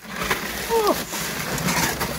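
A plastic milk crate full of paper-wrapped frozen meat packages scraping and rustling as it is hauled up out of a chest freezer, with a short vocal grunt a little under a second in.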